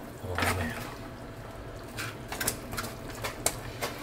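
Wooden chopsticks clicking lightly against the stainless hot pot and dipping bowl, about half a dozen small clicks over the second half, while lamb slices are cooked in the broth. A short murmur of voice comes about half a second in.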